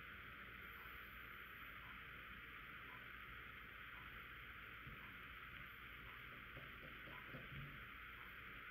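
Near silence: steady room-tone hiss, with very faint soft ticks about once a second.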